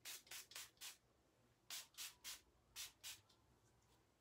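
A series of short, brisk rubbing or scraping strokes, about nine of them in two quick runs, the second starting a little under two seconds in.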